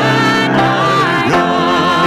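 Worship song sung by three vocalists on microphones, their voices gliding between held notes over a steady instrumental accompaniment.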